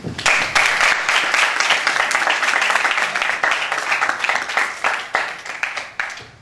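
Audience applauding, a dense patter of many hands clapping that starts at once and dies away near the end.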